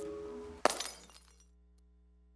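Closing notes of a station-ident music sting, cut off about half a second in by a loud breaking-glass crash sound effect that tinkles away over the next second. A faint steady low hum follows.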